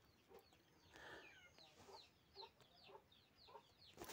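Near silence, with faint birds calling in the background: repeated short, falling chirps.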